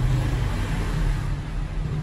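Steady low rumble of road traffic, a vehicle engine running.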